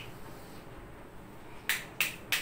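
Whiteboard marker on the board: quiet strokes for most of the time, then two short, sharp taps near the end as writing begins.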